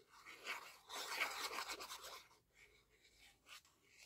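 Fine nozzle of a squeeze bottle of liquid craft glue dragging across paper as glue is squeezed out in a spiral: a faint scratchy rubbing for about two seconds, followed by a couple of light ticks near the end.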